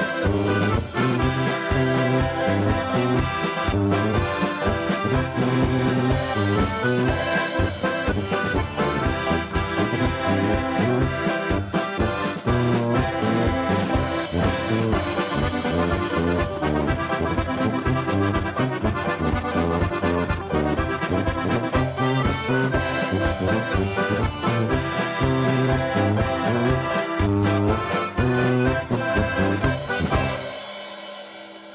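A small polka band of trumpet, low brass, tuba and keyboard playing a polka in a steady two-beat rhythm. It stops on a final chord right at the end, which then dies away.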